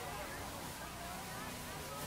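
Faint distant voices over a low, steady outdoor background.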